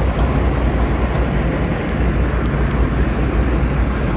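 Sport-fishing charter boat's engine running steadily under way: a constant low hum under a steady rush of water and wind.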